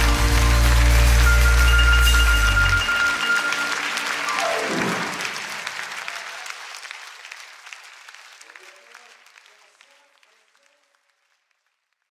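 A live band's final held chord, heavy in the bass, cuts off about three seconds in, with audience applause over and after it. The applause fades out gradually over the following several seconds.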